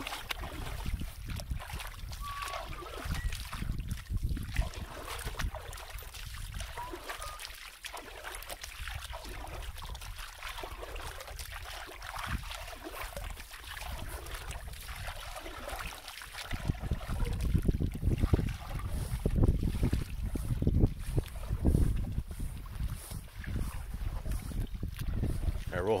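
Water sloshing and splashing in a plastic tub as a dog is washed by hand. Under it is a low rumble that grows louder about two-thirds of the way through.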